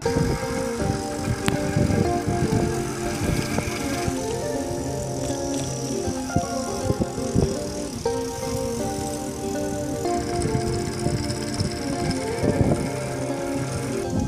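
Noise of a bicycle being ridden on a street, with uneven wind buffeting on the microphone and rattle from the bike. Background music plays under it.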